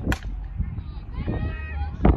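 Softball bat striking a soft-tossed softball in batting practice: one sharp hit just after the start.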